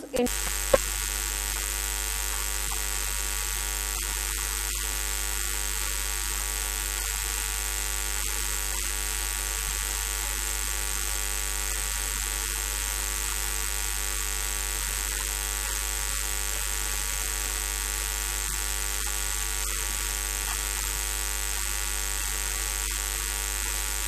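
Steady electrical mains hum with a buzzy edge and hiss, starting abruptly a moment in and holding at an unchanging level throughout.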